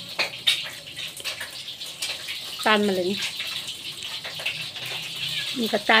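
Steady rain on a corrugated metal roof: a continuous hiss with scattered ticks of drops.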